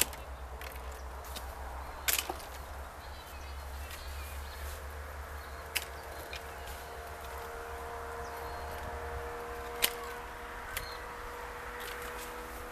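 Hand pruning shears snipping apricot branches: sharp single cuts a few seconds apart, with a quick double snip about two seconds in, about five cuts in all.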